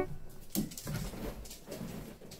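A dog making a brief, quiet vocal sound among soft knocks and movement noises.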